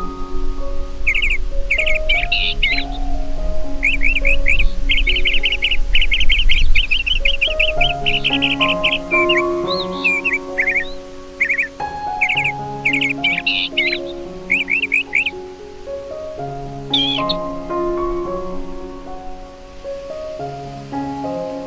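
Gentle piano music with birdsong mixed over it: small birds chirping and trilling in short phrases, with a fast run of repeated chirps about five seconds in and a sharp high call near the end. A low rumble sits under the first few seconds.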